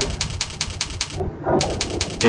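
Rapid, even clicking, about ten clicks a second, as the spreadsheet is scrolled across on the computer. The clicking stops briefly a little past a second in, then resumes.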